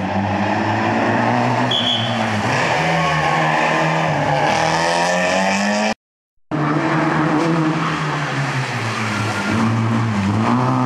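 Rally car engines revving hard, pitch climbing and dropping through gear changes and braking, as cars run a tight chicane on a wet tarmac stage. The sound cuts out for about half a second around six seconds in, then another car's engine comes back revving.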